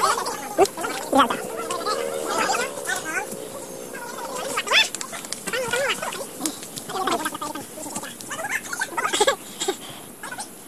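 Indistinct voices of people on the trail: short calls and drawn-out, wavering vocal sounds with no clear words.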